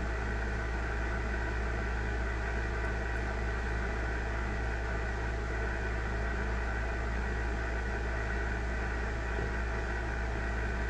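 Steady electrical hum with a hiss over it, from the ham radio station on the bench, unchanging throughout.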